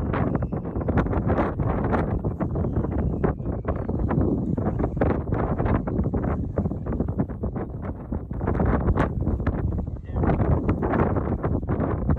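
Wind buffeting the microphone, a loud rumble that swells in gusts, with frequent short crackles over it.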